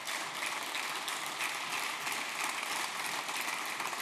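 Audience applause: many people clapping steadily.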